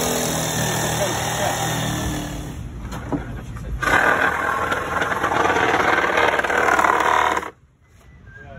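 Electric jigsaw cutting through a sheet of plywood, its motor running steadily for the first two seconds or so and then easing off. About four seconds in a louder, harsher noise takes over and stops abruptly near the end.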